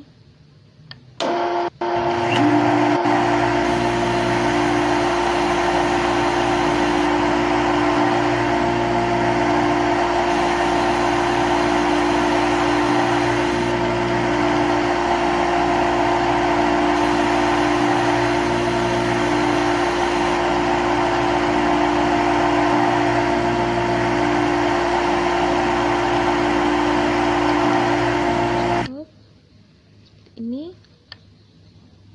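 Simulated CNC lathe spindle and cutting sound effect from a CNC simulator app. It is a loud, steady machine hum that starts just after the play button is pressed and cuts off near the end as the program finishes. A higher hiss comes in for three stretches of a few seconds each, during the tool's three cutting passes.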